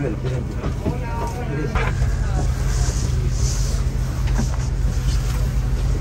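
Steady low hum of a parked airliner's cabin air system during boarding, with faint chatter of other passengers in the first couple of seconds.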